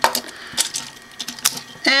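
Hard plastic toy-robot parts clicking as a piece is pulled off and another is fitted on, a few sharp separate clicks.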